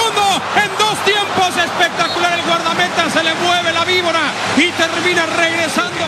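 A man's excited, raised voice giving Spanish-language football commentary on the play, with steady stadium crowd noise beneath.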